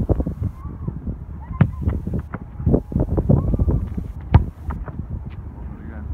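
Wind rumbling on a microphone at grass level, with a few sharp thuds of a football being struck, the loudest about four seconds in.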